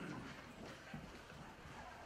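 Quiet room with faint, indistinct voices and small movement noises as people settle in their seats before the talk begins.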